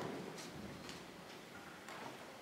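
Quiet room tone of a hall with a faint steady hiss and a few faint, irregular ticks.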